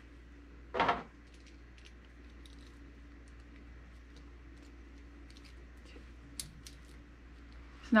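Faint, scattered metallic clicks and clinks of brass bolt snaps being handled and clipped onto the rope loops of a tug line, with one sharper click a little past six seconds in.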